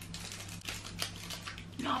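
Faint, scattered crinkles and clicks of a toffee bar's wrapper being picked and peeled open by fingers, over a low steady hum.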